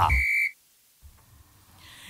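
A short steady high-pitched electronic tone lasting about half a second, cutting off suddenly, followed by near silence with a faint low hum.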